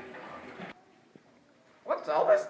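Faint, echoing voices in a hallway, cut off suddenly under a second in. A short near-silence follows, then a loud voice bursts in near the end.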